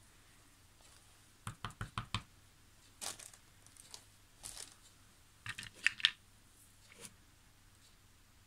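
Small wooden-block alphabet stamps knocking and clicking against the table, ink pad and their wooden box as a letter stamp is picked out, inked and pressed onto a paper strip. A quick run of light taps comes about one and a half seconds in, and the sharpest clicks about six seconds in.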